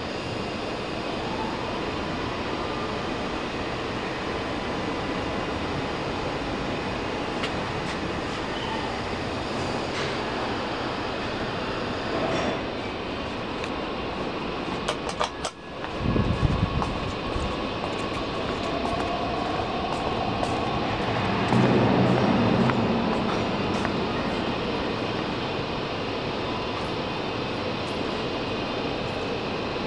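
A Thyssen traction lift car running between floors with a steady hum, then the doors open onto a railway station hall with its steady background noise. About three quarters of the way through, a rising whine builds into a louder stretch.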